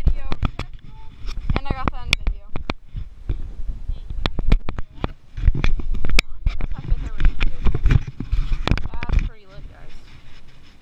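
Irregular sharp clicks and knocks throughout, with a few short bursts of excited voices without clear words and a low rumble in the second half.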